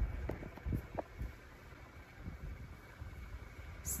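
A few soft knocks and rustles of handling in the first second or so, then a faint steady hum of a small electric motor.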